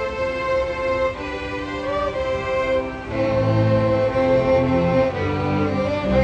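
Student string orchestra playing, the violins holding long bowed notes; about halfway through, lower strings come in and the sound grows fuller and louder.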